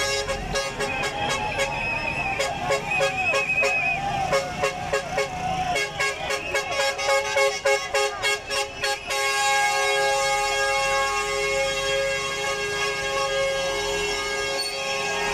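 A crowd shouts and chants over rapid sharp claps, with a shrill wavering whistle about two seconds in. At about nine seconds a loud, steady horn with several held pitches sets in and keeps sounding, typical of a lorry's air horn.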